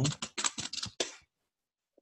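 Computer keyboard typing: a quick run of keystrokes that stops a little past a second in.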